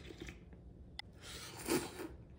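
Quiet sounds of a person eating soup: a faint sharp click about halfway through, then a short, soft breathy noise near the end.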